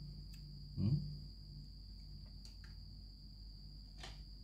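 Quiet background with a steady, faint high-pitched whine and a low hum throughout, a few faint light clicks, and a brief murmured 'hmm' about a second in.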